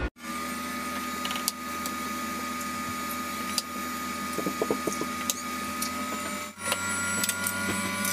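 A steady hum, with a few sharp taps and clinks as eggs and other ingredients go into an empty stand blender jar and its lid is handled; the blender itself is not running.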